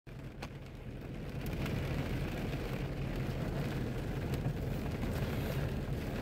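Heavy rain falling on a car's windshield and roof, heard from inside the cabin as a steady wash of noise, with a steady low hum underneath and a few faint ticks of drops early on.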